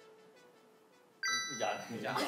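A single bright electronic chime, a text-message alert sound, rings out suddenly a little past the middle, after a faint fading tail of background music.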